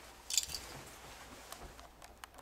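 Dog chewing a treat, with one short crunch about a third of a second in and a few faint clicks afterwards.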